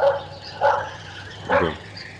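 A dog barking repeatedly, three short barks less than a second apart.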